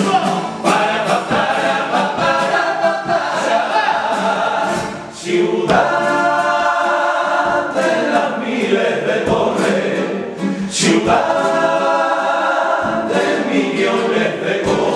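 A male comparsa chorus singing a Cádiz carnival pasodoble together in harmony, holding long loud chords, with short breaks between phrases about five and ten seconds in.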